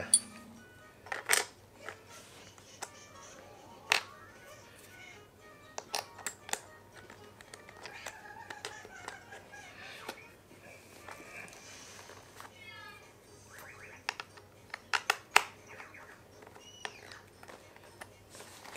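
Scattered small clicks and taps of cleat bolts, a small tool and the plastic cleat against the cycling-shoe sole as the cleat is fitted by hand, with a cluster of clicks near the end. Faint music underneath.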